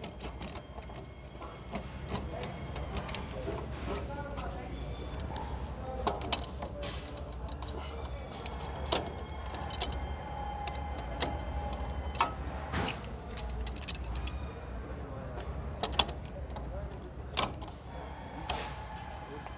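Metal clicks and clinks from a switchgear operating lever: the steel handle is fitted together and pushed into the switch operating socket of a ring main unit panel. Sharp knocks are scattered irregularly over a steady low hum, with the loudest clicks near the end.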